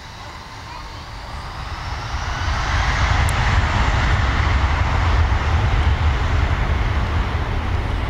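Airbus A321 jet engines spooling up to takeoff power as the airliner begins its takeoff roll. The sound climbs over about two seconds into a loud, steady jet roar with a deep rumble.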